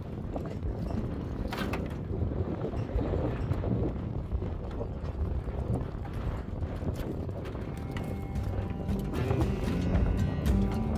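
Knocks and scrapes of an old truck cab's sheet-metal section being shifted on a wooden trailer deck, over a steady low rumble. Music fades in near the end.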